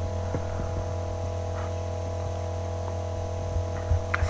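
Steady low electrical mains hum with a few fainter steady tones above it.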